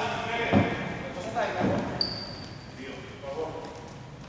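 A basketball bouncing on a hardwood court in a large, echoing sports hall, with a short high squeak about halfway through and faint voices.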